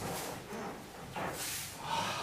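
Movement noise of two aikido practitioners performing a shomen uchi kote gaeshi wrist-turn throw. It comes as two short hissing rushes of noise, the second and louder about a second and a half in.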